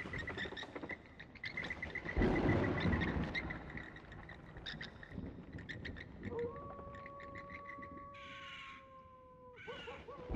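Animal-like sound effects: a loud low growl about two seconds in, scattered rapid clicking, and from about six seconds a long, steady, slightly falling call that cuts off just before the end.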